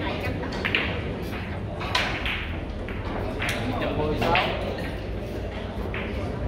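Carom billiard shot: the cue tip strikes the cue ball with a sharp click under a second in, followed over the next few seconds by several more clicks of balls hitting each other, over a low murmur of voices in the hall.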